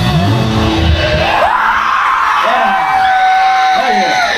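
A rock band stops at the start, with a few notes ringing on for about a second. Then the audience yells and whoops, with one long held yell near the end.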